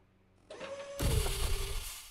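A short sound effect: a steady hum with hiss that, about a second in, swells into a loud rushing rumble whose tone drops slightly, then begins to fade.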